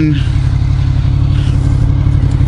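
1992 Honda VFR750's V4 engine idling steadily with the bike at a standstill.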